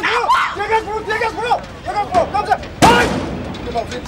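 Several people's voices talking and calling out over one another, with one sharp, loud bang about three seconds in, the loudest sound.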